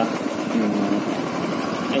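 Motorcycle engine running steadily at low revs as the bike moves off along a dirt track.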